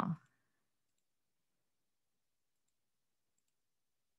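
Near silence with a few faint, scattered clicks, after the last word of a woman's question at the very start.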